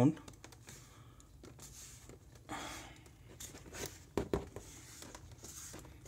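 Plastic back cover of an Acer R3-131T laptop clicking as its clips snap into place under thumb pressure: a few faint scattered clicks, with two sharper ones about four seconds in. The clicks show the cover is seating properly.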